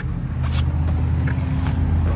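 Chevrolet Suburban's V8 idling with a steady low hum, with a few faint clicks and rustles of handling.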